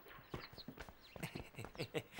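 Horse hooves clip-clopping on hard ground as a horse-drawn carriage moves, a faint, irregular run of knocks.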